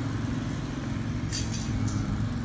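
An engine running steadily at idle, a low hum, with two brief light clicks near the end.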